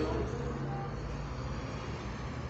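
Steady low room hum and background noise, with faint, indistinct voices.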